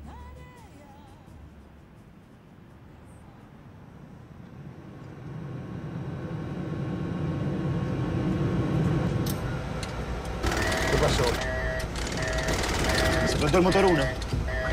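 A low engine rumble builds up over several seconds. About ten seconds in, an aircraft cockpit warning alarm starts, a two-tone signal beeping on and off repeatedly, with voices over it: a warning of engine trouble.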